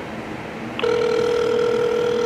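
Telephone ringback tone from a smartphone on speaker: one steady, even ring that starts about a second in. It means the called phone is ringing and has not been answered.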